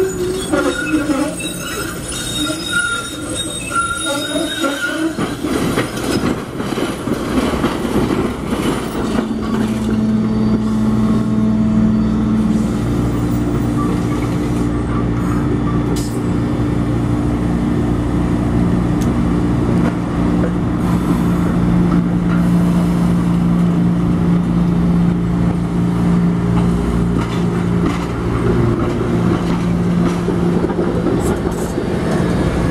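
SEPTA Kawasaki trolleys (light-rail streetcars) moving on street track. In the first few seconds the wheels squeal on the curve in wavering high tones. Then, as a car passes close, the loudness rises to a steady low hum over the rumble of the wheels on the rail.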